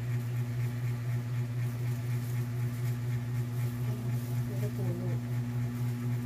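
Steady low hum with a few evenly spaced higher tones, unchanging throughout, with faint voices in the background about four seconds in.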